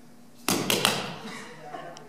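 Juggling balls dropped onto a stage floor: three quick sharp impacts about half a second in, each one landing right after the last.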